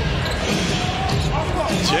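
A basketball being dribbled on a hardwood court, a run of low repeated bounces over the hubbub of an arena.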